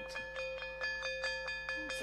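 School-bell sound effect: an electric bell ringing on and on, its clapper striking about five times a second.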